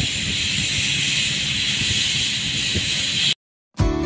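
Steady, loud hiss of a paint spray gun with a low rumble underneath, cutting off abruptly a little over three seconds in. Acoustic guitar music starts just before the end.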